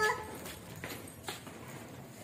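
The tail of a child's sung note ends right at the start. Then a few soft, faint taps of a toddler's footsteps on a tiled floor.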